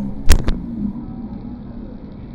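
Two sharp knocks in quick succession, about a third of a second and half a second in, then a steady low rumble of open-air background noise.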